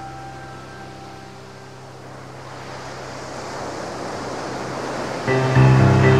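Ambient electronic music at a track transition: a held low note and fading chime tones give way to a swelling wash of noise like surf. About five seconds in, a new track enters with loud sustained chords.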